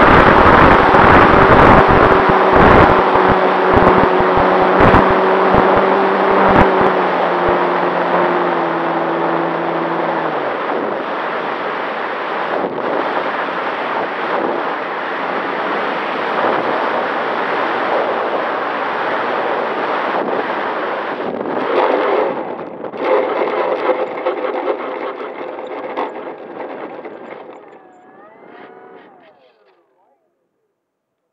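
Airflow rushing over the wing camera of an RC PT-19 scale model as it comes in to land, with the motor and propeller tone stepping down in pitch and cutting out about ten seconds in. The rush then fades, with a couple of knocks about two-thirds of the way through as the wheels meet the grass, and dies away near the end.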